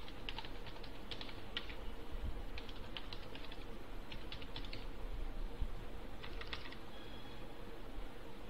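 Computer keyboard typing: quick keystrokes in four short bursts with pauses between them, over a faint steady hum.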